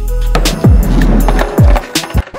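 Skateboard wheels rolling down a plywood ramp and across concrete, with background music.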